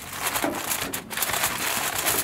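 Sheets of aluminium foil crinkling and crumpling as they are folded and pressed tight around the rim of a pan, with a short lull about halfway through.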